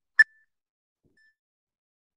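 A single short electronic beep from a workout interval timer, about a fifth of a second in.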